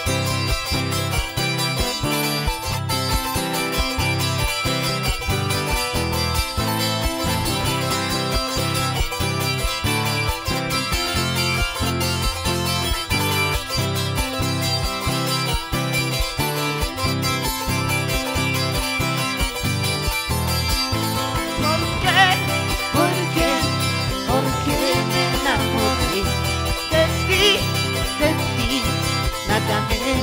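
Live band music with no singing, a charango's plucked and strummed strings over a steady beat and bass line. About two-thirds of the way in, a wavering higher melody line joins.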